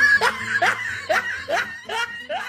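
A person laughing in a run of short rising snickers, about two a second, getting quieter toward the end.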